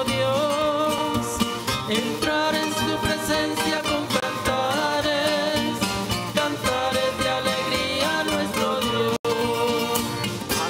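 Entrance hymn sung with instrumental accompaniment, the melody voices moving over a steady chordal backing. The audio cuts out for an instant near the end.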